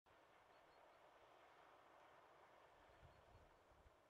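Near silence: a faint steady hiss, with a few soft low thuds near the end.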